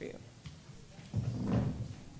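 Chairs being carried and set down on a stage floor, with a low murmur of off-microphone voices in the second half.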